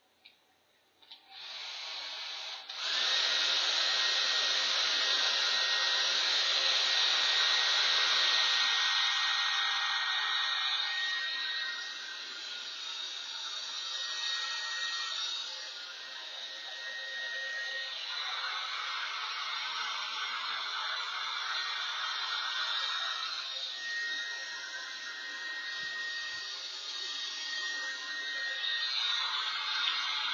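Handheld hair dryer blowing on a cork to dry its black gesso coat: it switches on about a second in, steps up louder near three seconds, then runs steadily with a thin high whine, its level wavering as it is moved around.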